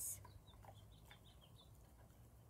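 Faint chirps of a small bird: a few short, high calls in the first second and a half over near-quiet garden background.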